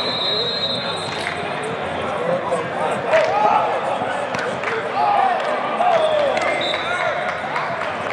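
Echoing hubbub of many voices calling and shouting across a large indoor sports hall, with a few sharp thuds.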